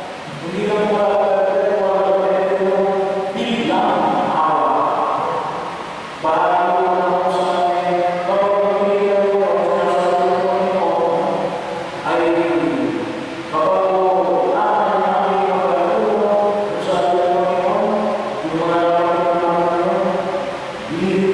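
A priest's voice chanting a liturgical prayer into a microphone, amplified through the church sound system, in long phrases held on steady pitches with short pauses for breath between them.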